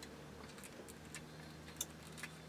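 Quiet room with a few faint, irregular clicks and ticks from a paper sticker being handled, the sharpest near the end, over a low steady hum.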